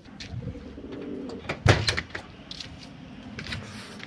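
Domestic pigeons cooing low, with a sharp knock about one and a half seconds in and a few lighter clicks.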